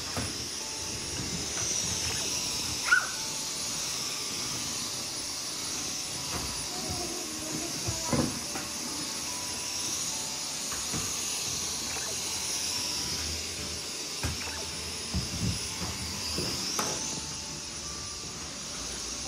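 A steady hiss of room noise, broken by a few light knocks and taps as glue sticks and paper strips are handled on a tabletop. The sharpest knock comes about three seconds in.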